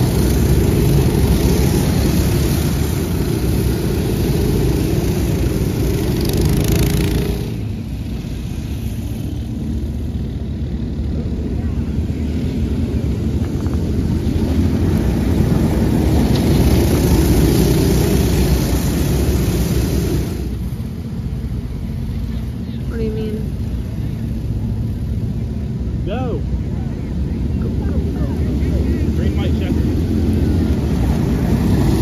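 A pack of box stock go-karts with single-cylinder Predator 212 engines racing past on a dirt track, their engines drawn out in a loud, steady drone that swells as the pack nears. The drone drops away sharply about seven seconds in and again about twenty seconds in as the karts move off, then builds again.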